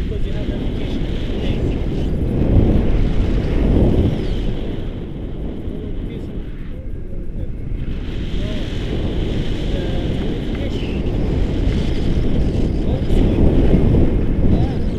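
Wind buffeting the action camera's microphone in flight under a tandem paraglider: a loud, low rumble that gusts stronger a couple of seconds in and again near the end.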